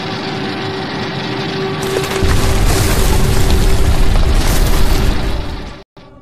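Dubbed explosion sound effect: a rushing, hissing noise that swells into a heavy low rumble about two seconds in and cuts off suddenly just before the end, with a steady held tone under it.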